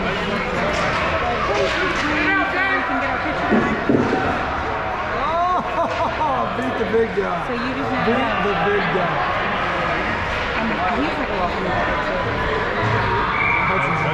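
Ice hockey game in an indoor rink: indistinct voices and shouts echo over a steady background noise. A few short knocks, from puck or sticks, come about four and seven seconds in.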